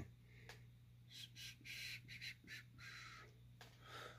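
Near silence: room tone with a steady low hum and a few faint, soft rustling noises.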